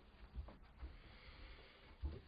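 Near silence: room tone with a few faint, soft thumps in the first second, a man getting up off a sofa and stepping away.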